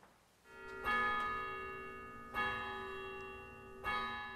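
A bell chime struck three times, about one and a half seconds apart, each strike ringing on and slowly fading, with a rising swell just before the first strike.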